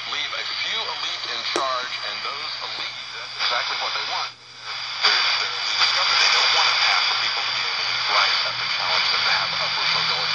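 Shortwave radio receiving a weak talk broadcast on 12160 kHz: a faint man's voice buried under heavy static hiss and steady whistles, from a signal fading in and out. About four seconds in the sound briefly cuts out, then returns louder with more static.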